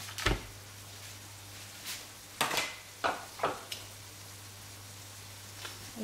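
A block of plant-based minced meat dropped into a frying pan lands with a single thump, then a few short knocks and scrapes of utensils in the pan follow, over a low steady hum.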